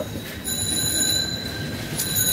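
Rustling of a folded cloth dress being handled and unfolded. Under it runs a steady high-pitched whine of several thin tones, which sets in about half a second in.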